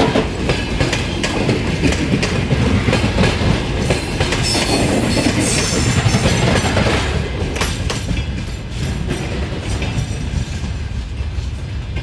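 Passenger coaches rolling past at close range, their wheels clattering rhythmically over rail joints. The clatter dies down over the last few seconds as the last coach goes by and draws away.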